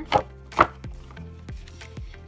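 A sheet of thick watercolor paper being lifted and flexed, giving two crisp snaps about half a second apart, the second louder; the stiff sound is the sign of heavy, thick paper.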